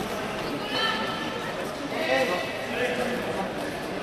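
Several people's voices calling out and talking in a large sports hall, over a steady background of crowd chatter.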